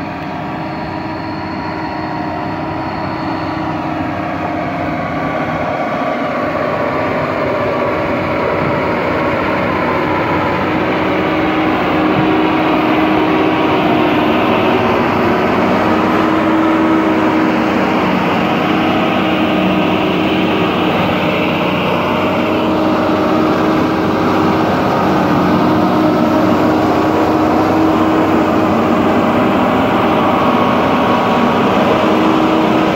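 Shantui motor grader's diesel engine running steadily as the machine draws up close, growing louder over the first dozen seconds and then holding level.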